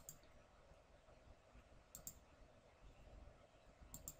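A few faint computer mouse clicks over near-silent room tone: one at the start, a quick pair about two seconds in, and another at the end, as stair run points are clicked in.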